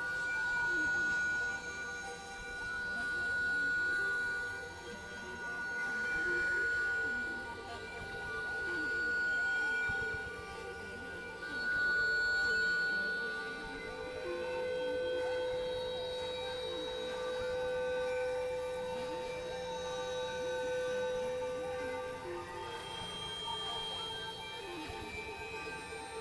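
Experimental synthesizer drone music: several sustained tones layered together, swelling and ebbing in slow waves for the first half, then settling into a steadier hum with one lower tone held for several seconds.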